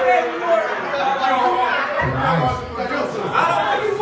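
Speech only: men's voices talking and chattering over one another, the words not clearly made out, in a large room.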